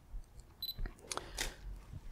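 Faint handling clicks from switching off the Olympus FL-LM3 clip-on flash on the camera, with a short high beep about half a second in.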